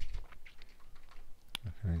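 Computer keyboard typing: a string of light key taps, with one sharper click about one and a half seconds in.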